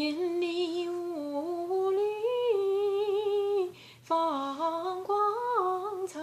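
A woman singing a slow Chinese folk melody alone, without accompaniment, in long held notes that step up and down. She breaks off briefly for a breath about two-thirds of the way through.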